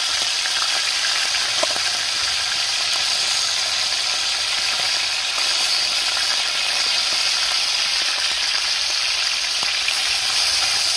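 Fish frying in hot oil in a pan, a steady sizzle with a few faint clicks.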